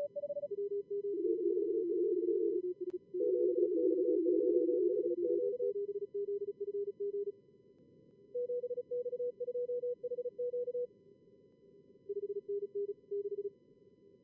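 Morse code (CW) tones from a contest logger's simulated radio stations, keyed fast at pitches around 400 and 550 Hz, over a low receiver hiss. Between about one and six seconds in several callers key at once in an overlapping pile-up; after that single stations send in turn, with short gaps of hiss alone.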